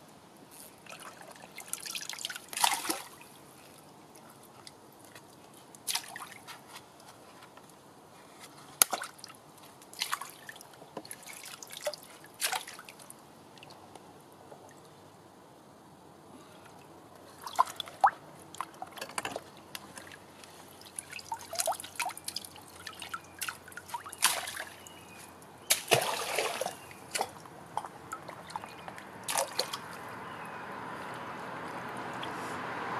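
Gloved hands splashing and rummaging in shallow brook water, pulling out debris that blocks the flow under pipes. Irregular splashes and drips come every second or few, with a quieter stretch midway.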